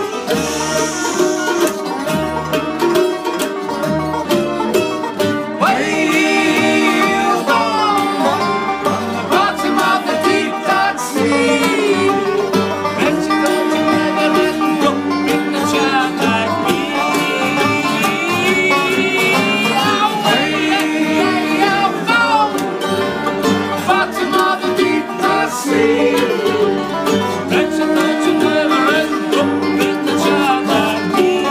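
Live bluegrass music: banjo picking a fast run of notes, with mandolin and an upright double bass keeping a steady beat underneath.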